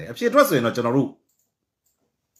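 A man speaking, his voice stopping a little past halfway, then silence.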